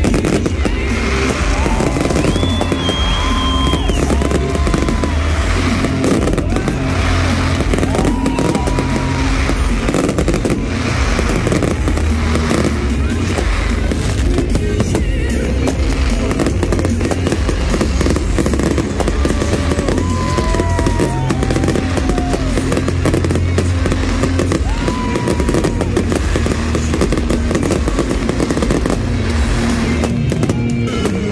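An aerial fireworks display with shells bursting in quick succession, many bangs and crackles without a break, over loud music with a steady heavy bass.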